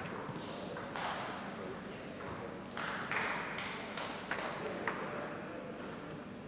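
Table tennis ball bouncing a few times at uneven intervals, short sharp clicks rather than the steady rhythm of a rally, with voices murmuring in the hall.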